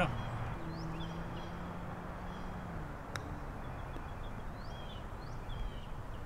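Quiet outdoor ambience with a few faint bird chirps, a low steady hum for about two seconds, and a single sharp click about three seconds in.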